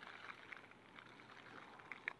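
Near silence, with faint small water sounds and a few faint ticks around a sea trout held in shallow river water.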